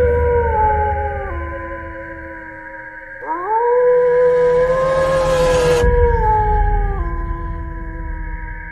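An eerie, drawn-out howling wail that slides down in pitch, swoops up again about three seconds in, holds, then falls away, over a steady high-pitched drone.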